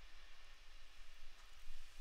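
Faint steady hiss with a low hum underneath: the background noise left in the microphone signal with CEDAR sdnx noise suppression set to 10 dB.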